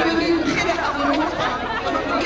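A woman speaking Dutch into a hand microphone, with crowd chatter behind.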